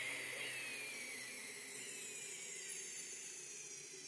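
Tail of a produced radio-show intro sound effect dying away: a faint high hiss with thin whines sliding slowly down in pitch, fading steadily toward silence.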